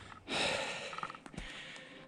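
A person's short, heavy breath out close to the microphone, followed by faint rustling and a light click.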